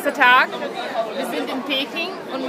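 People's voices: a loud, high-pitched exclamation about a quarter second in, then short bits of chatter.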